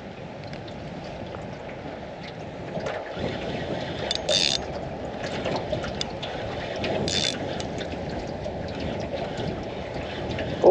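Water lapping against the hull of a small aluminium dinghy, with wind on the microphone, broken by two short hissing bursts about four and seven seconds in.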